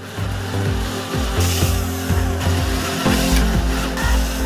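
Background music with an electric drill boring a hole through a small softwood bar underneath it. The cutting noise is loudest from about one and a half to two and a half seconds in.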